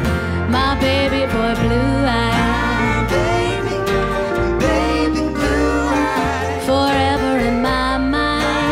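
A live acoustic band plays a song: acoustic guitar, upright bass and keyboards, with a woman singing over them.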